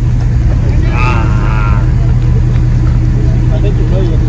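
A steady low rumble of a motor vehicle engine running nearby, at an even level throughout. A short voice call sounds about a second in.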